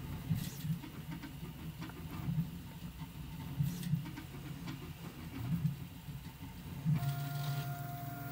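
Prusa MK3S 3D printer running, its stepper motors humming at shifting pitches as the print head moves through the last layers of a print. About seven seconds in the motion ends and a steady hum with a thin steady whine is left as the head moves clear of the finished part.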